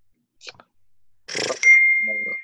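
A single steady, high-pitched electronic beep lasting about a second, starting about a second and a half in, just after a brief rustling noise.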